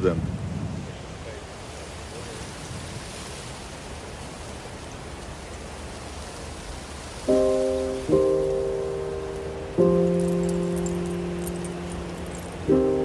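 Steady outdoor hiss for about seven seconds, then background music begins: three sustained chords, each starting suddenly and fading slowly, struck about one and two seconds apart.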